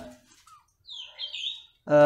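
A few short, faint bird chirps about a second in, in a pause between speech.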